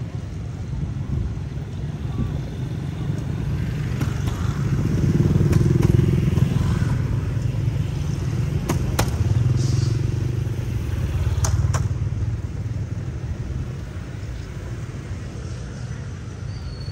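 Motorbike engines running nearby with a low rumble that swells twice, as if bikes pass, over faint background voices and a few light clicks.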